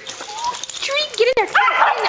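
A small dog giving a few short, high-pitched yips and whines, with one sharp click partway through.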